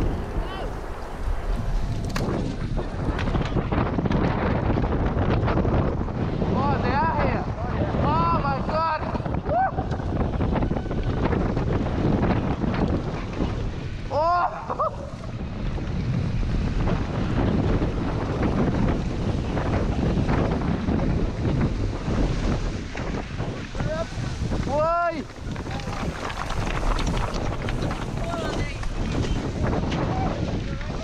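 Wind rushing over an action camera's microphone as a mountain bike descends a grassy hillside among a large pack of riders. Several times, riders let out short high-pitched yells over the steady rush.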